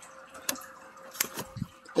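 Electrolux oven door being opened: a few light clicks and then a soft low thump as it comes open.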